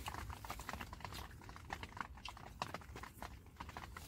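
Irregular light clicks and taps, several a second, over a low steady rumble.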